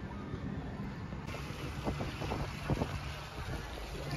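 Low rumble of wind on the microphone over outdoor street background noise, with a few short knocks about halfway through.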